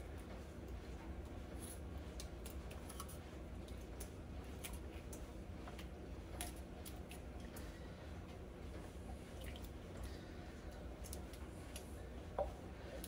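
Crushed pineapple in juice being scraped out of a can with a silicone spatula into a glass baking dish: faint wet squishing with scattered light clicks of spatula on can, over a low steady hum.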